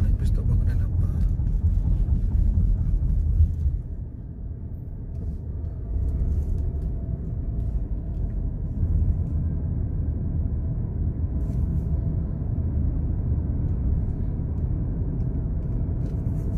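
Steady low road and engine rumble inside the cabin of a moving car, easing off briefly about four seconds in before returning.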